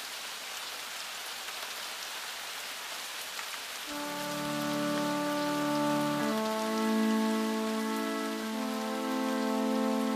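Steady rain falling, alone for the first four seconds; then sustained chords of music enter over the rain, the chord changing twice.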